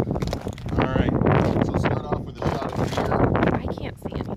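People's voices talking, not clearly worded, over a steady low rumble of wind buffeting the microphone.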